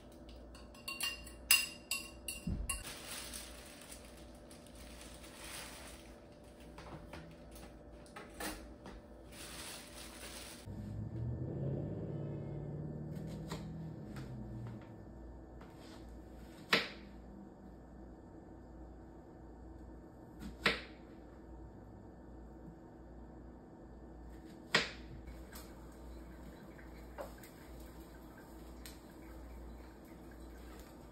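Beaten eggs poured from a bowl into a frying pan, with a utensil clattering against the bowl and pan, then a steady hiss from the pan that stops abruptly. After a low hum of a few seconds, three single sharp knocks about four seconds apart: a knife striking a cutting board as strawberries are sliced.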